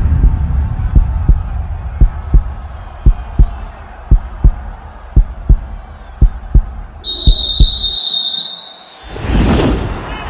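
Heartbeat sound effect: seven double thumps, about one a second, over a faint low hum. A high steady beep sounds for about a second near the end, followed by a swelling whoosh.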